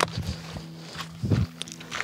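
Soft background music of sustained low notes. A sharp knock comes right at the start, and light footsteps follow.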